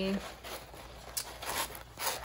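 A drawn-out spoken word trails off, then a baking sheet scrapes and rustles as it is slid under a paper art journal, with a couple of light handling knocks about a second in and again past the middle.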